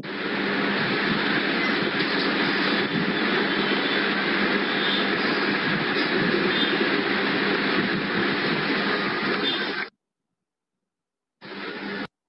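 Steady rushing background noise with a faint low hum. It cuts off suddenly about ten seconds in and comes back briefly near the end.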